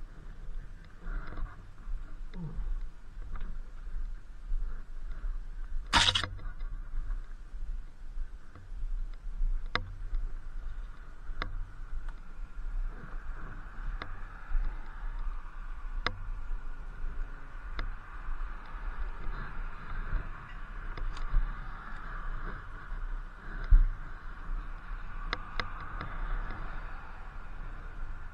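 Wind rumbling on the microphone over the steady hum of an Inmotion V8 electric unicycle rolling along pavement, with sharp clicks every couple of seconds and one louder burst of noise about six seconds in.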